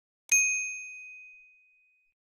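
A single bright ding of a notification-bell sound effect, struck once and fading away over about a second and a half.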